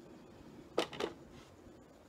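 Two sharp taps about a quarter second apart, about a second in, over faint room tone.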